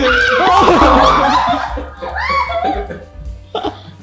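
Loud laughter over background music. The laughing is heaviest in the first two seconds, with a shorter burst a little later.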